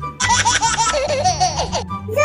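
High-pitched laughter in a quick run of bursts lasting about a second and a half, over steady background music.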